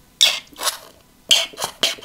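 A plastic drink-powder sachet crinkling in a series of short, sharp rustles as it is tapped and shaken to empty it into a drink bottle.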